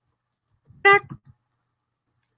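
A person's voice giving one short, high, steady vocal note, under a second in, with a few fainter sounds trailing after it.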